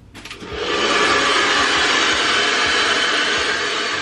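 Handheld hair dryer switched on just after the start, rising to a steady run within about a second.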